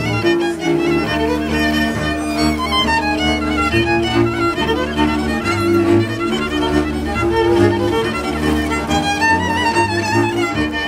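Hungarian folk string band of two violins and a bowed double bass playing a tune: the violins carry the melody over steady low bass notes.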